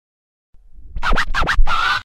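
Short hip-hop intro sting built on record scratching. A low rumble swells up, then come three quick scratches and a longer scratch that cuts off suddenly.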